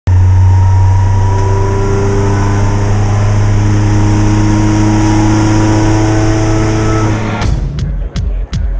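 Loud, steady deep rumble under held tones that come and go at different pitches, an intro drone laid under the opening title card. It cuts off suddenly near the end as music with a beat takes over.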